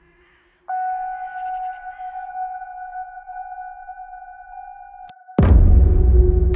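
Horror-style film sound design: a steady high held tone comes in about a second in and cuts off near the end with a sharp click. It is followed by a loud, deep cinematic hit that rolls into a low drone.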